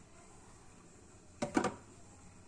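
Faint steady hiss from lit gas stove burners, with a brief clatter of a few quick knocks about one and a half seconds in.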